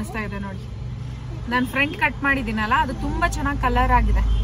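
A woman talking inside a car, over the car's low cabin rumble, which grows louder near the end.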